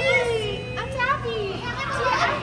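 Excited, overlapping voices of adults and children greeting one another, with high, gliding exclamations and no clear words.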